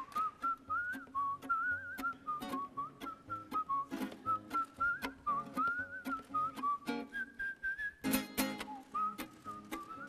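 A man whistling a wandering melody while plucking notes and chords on a lute. A loud plucked chord comes about eight seconds in.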